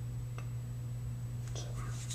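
Quiet room tone: a steady low electrical hum, with a faint click about half a second in.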